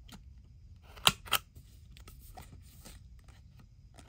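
Scissors snipping paper: two quick, sharp snips about a second in, with a few fainter clicks from handling.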